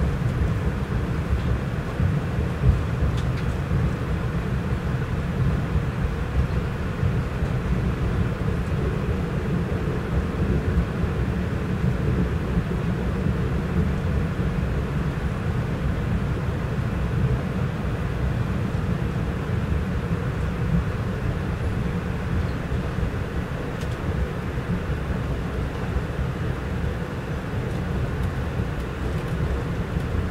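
Steady low rumble of a moving passenger train heard from inside an Amfleet I coach: wheels running on the rails, with no clear breaks or rhythm.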